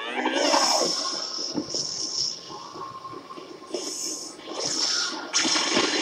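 Animated fight sound effects of an energy attack: a rising sweep at the start, then repeated bursts of rushing noise building toward a bright blast near the end.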